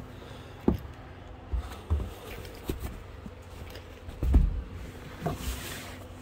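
Handling noise as cushions and the camper's plywood bed base are felt around: a few soft knocks and thumps, the loudest about four seconds in, and fabric rustling near the end, over a faint steady hum.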